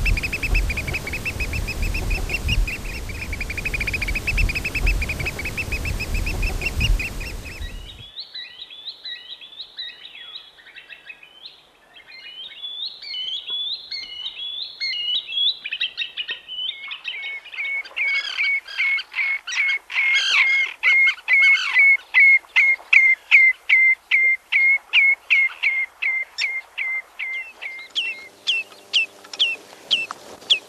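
Wading birds calling in turn. First a Eurasian oystercatcher gives rapid, shrill piping over a background rumble, then a run of varied piping notes. From about seventeen seconds a green sandpiper repeats sharp whistled notes at about two a second, and near the end a different wader starts calling.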